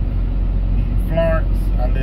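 Steady low engine rumble heard from inside a truck's cab.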